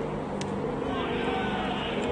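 Indistinct voices over a steady background rumble, with one short sharp click about half a second in.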